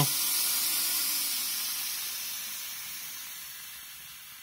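Steady hiss of steam from the Black & Decker FSM1605 steam mop's jet, fading gradually as the steam dies away after the mop is switched off.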